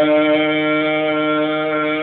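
A man's voice chanting Orthodox liturgical chant, holding one long steady note on a single vowel.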